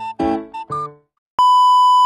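A few quick, fading music notes, then about one and a half seconds in a loud, steady electronic beep starts: a single high test tone of the kind played with TV colour bars, used here as a glitch transition.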